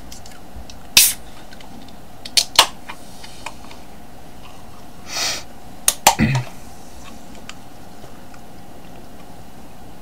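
Room tone with a faint steady hum, broken by a handful of short sharp clicks, two of them close together about two and a half seconds in and a pair about six seconds in, and a brief breath-like puff about five seconds in.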